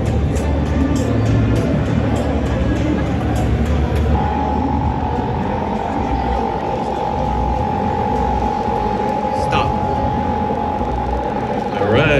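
Crowd chatter in a large convention hall over music from a PA system. About four seconds in, a steady electronic tone comes in and holds until it cuts off near the end, while the game board's numbers cycle on the screen.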